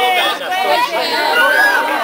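A large group of people all talking at once: overlapping chatter of many voices with no single speaker standing out.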